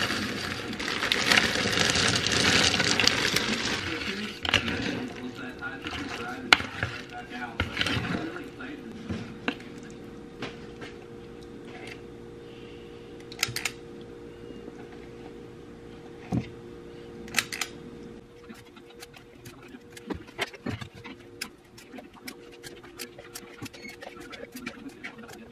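Berries rattling and rustling as they are poured from a plastic zipper bag into a plastic mixing bowl, loudest in the first four seconds. After that come scattered light clicks and taps of a metal portion scoop against the bowl and a muffin tin as batter is scooped out.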